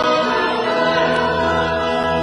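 A hymn sung with keyboard accompaniment: voices and steady, held chords.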